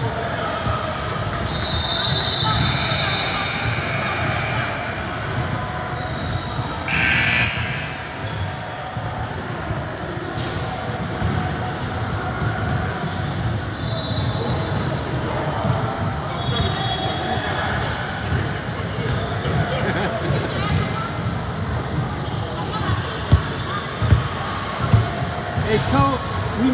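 Gym ambience of many indistinct voices, with basketballs bouncing on a hardwood court. There are sharper bounces near the end and a brief sharp noise about seven seconds in.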